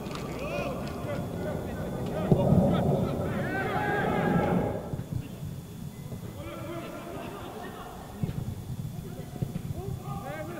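Footballers and coaches shouting calls to each other during play on the pitch, loudest between about two and five seconds in, with more calls near the end.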